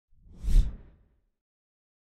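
Intro whoosh sound effect with a deep low rumble. It swells to a peak about half a second in and fades away within a second.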